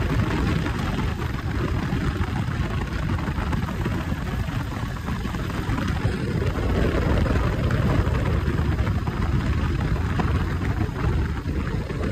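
Steady rumble of wind and road noise from a sport motorcycle ridden at speed, the wind buffeting the microphone.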